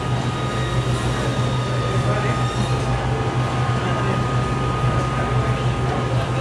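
Steady low machine hum with a thin, constant high whine above it and a general noisy background.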